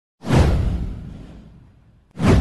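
A whoosh sound effect for an animated intro: a sudden rush with a deep rumble underneath that fades away over about a second and a half.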